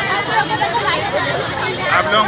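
Several girls talking at once: overlapping chatter of young female voices.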